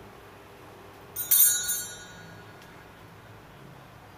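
A brief, bright metallic ring about a second in: two quick strikes close together, whose high ringing dies away within a second.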